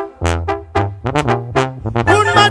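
Brass section of a Mexican regional band playing a quick run of short, separated notes over a low bass line: an instrumental break in a corrido.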